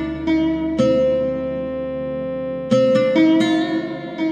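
A solo plucked string instrument improvising an Arabic taqsim: a few plucked notes, then one note held and left to ring from about one second in until nearly three seconds, followed by a fresh run of plucked notes.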